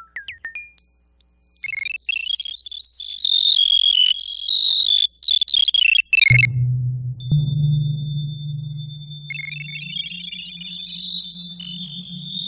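Electronic music made from digitally generated synthetic tones. A few short high pings fall in pitch under a thin, steady high tone. A dense flurry of rapid high bleeps cuts off suddenly about six seconds in and gives way to a low steady drone. Over the drone a high held tone enters, and a new flurry of bleeps rises near the end.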